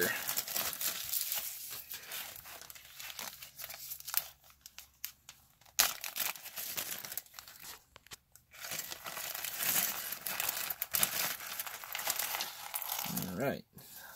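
Clear plastic bag and bubble wrap crinkling and rustling as they are handled and pulled open, in uneven bursts with short pauses. There are a couple of sharp clicks about four and six seconds in.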